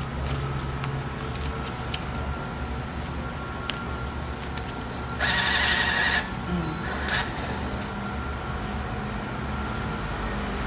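A coin-change machine's bill acceptor drawing in a 100-yuan banknote: a burst of motor noise about a second long about five seconds in, then a couple of short clicks. Under it runs the steady low hum of the laundromat's machines.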